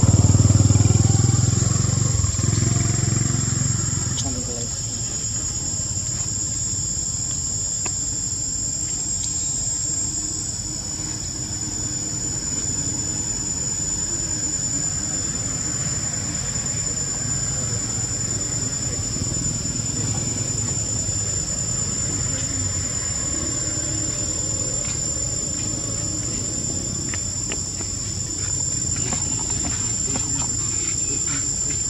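Steady high-pitched drone of forest insects, with a low rumble underneath that is loudest in the first few seconds and then eases to a constant background.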